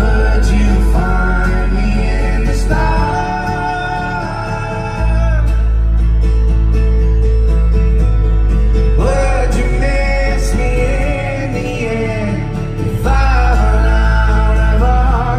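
Live band playing a pop-rock song: a male singer's vocal phrases over electric bass guitar, keyboards and drums, with a heavy low bass, recorded loud from the crowd.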